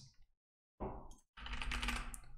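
Typing on a computer keyboard: a short run of keystrokes about a second in, then after a brief pause a longer run of rapid typing.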